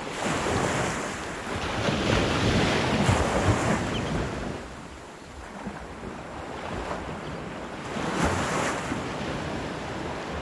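Small waves washing up on a sandy beach in surges, the loudest one a few seconds in and another near the end, with wind blowing on the microphone.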